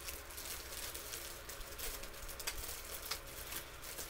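Plastic bag wrapping a shirt crinkling and rustling as it is handled and pulled open, in small irregular crackles, over a steady low hum.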